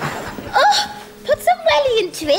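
A person's short, gasping, hiccup-like vocal sounds, several in quick succession, as the tail of laughter fades.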